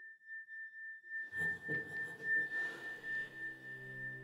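Eerie trailer score: a steady, high, pure ringing tone held throughout, joined about a second in by a low, rising drone with a rustling texture.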